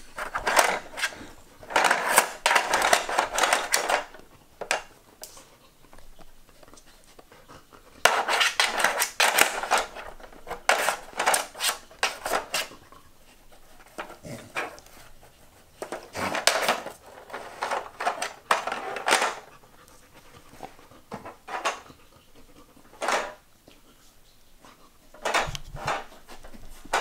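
A Samoyed nosing and pawing at a plastic Trixie Move2Win strategy puzzle board: bursts of plastic clattering and rattling from its sliders and pieces, a few seconds at a time with quieter pauses between, along with the dog panting.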